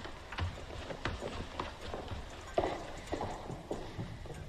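Horse hooves clip-clopping: several separate, unevenly spaced hoof strikes.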